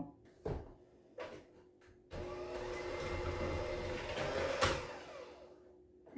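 Electric hand mixer beating an egg into creamed butter and sugar in a plastic bowl: two light knocks early, then the mixer runs steadily for about two and a half seconds and winds down near the end.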